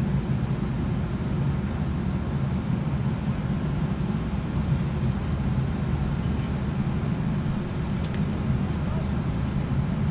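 Steady low rumble of outdoor background noise, even throughout, with no distinct events.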